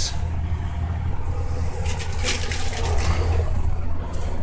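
A steady low machine hum, with a few brief knocks and rattles about two seconds in.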